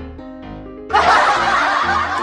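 Light background music with plucked, piano-like notes; about a second in, a loud burst of canned laughter, a comedic laugh-track sound effect, cuts in over it.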